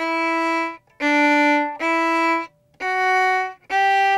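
Violin playing slow, separate bowed notes that step up a scale, each held just under a second with short breaks between.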